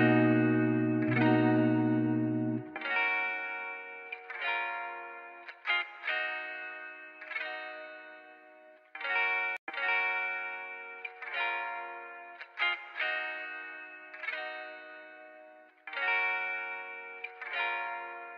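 Background music: a chill lo-fi guitar track with a chorus effect, plucked chords that ring and fade in a slow repeating pattern. A low bass part drops away about three seconds in.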